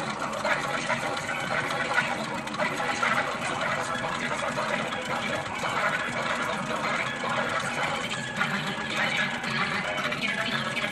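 Background music with a voice in it, playing continuously at an even level.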